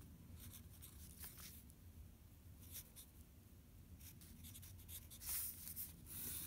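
Pencil writing on paper: short, faint scratchy strokes, growing busier and louder near the end, over a low steady hum.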